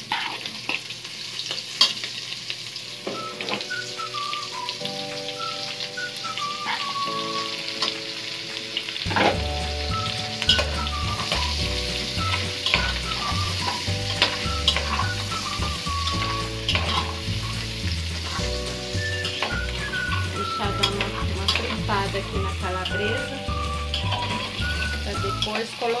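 Diced calabresa sausage sizzling in hot bacon fat in an aluminium pot, with a spoon scraping and stirring against the pot. Background music with a melody comes in a few seconds in, and a steady bass beat joins it about a third of the way through.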